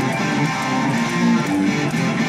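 Hard rock band playing live: electric guitar to the fore over bass and drums, continuous and steady in level.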